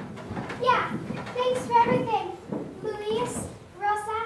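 Children speaking.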